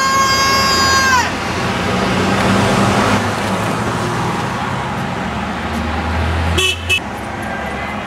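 A passing car's horn honks in one long held blast that cuts off about a second in, against the noise of street traffic. A vehicle rumbles past, and near the end come two quick, higher-pitched beeps.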